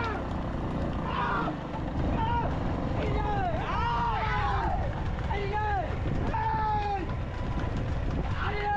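Men yelling and whooping again and again to drive on racing bulls pulling a wooden cart, short rising-and-falling cries coming several times a second. Under them runs a steady low rumble of the moving cart and chase.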